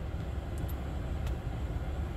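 Steady low rumble inside a car's cabin from the car's idling engine and ventilation fan.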